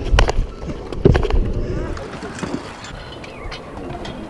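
Stunt scooter wheels rolling over skate-park concrete, with two sharp clacks near the start and about a second in, then a quieter steady rolling rumble.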